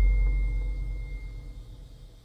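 Deep cinematic boom from a dramatic soundtrack, a low rumble slowly dying away, with a thin steady high tone ringing over it.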